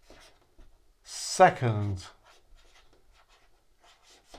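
Felt-tip marker writing on a whiteboard: faint short scratching strokes as a word is written out. A man's voice sounds once, briefly, about a second in, louder than the writing.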